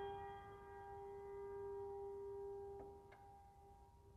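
Grand piano holding a chord that rings on and slowly fades, faint by now, with two soft notes played about three seconds in.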